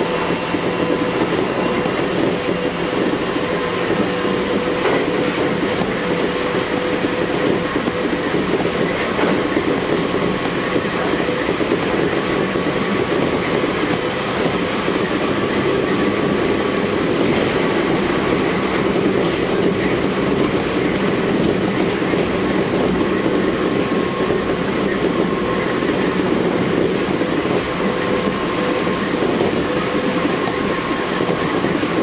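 Kintetsu electric train running at speed, heard from inside the front car: a steady rumble of wheels on rail with a few clicks as the wheels cross rail joints.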